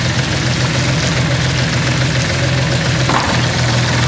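Yanmar D36 diesel outboard motor running steadily in a test tank, a constant low hum under the noise of churning water.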